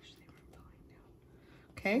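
Faint rustling as hands handle shredded lettuce and crisp cheese taco shells on a plate, then a woman says "Okay" near the end.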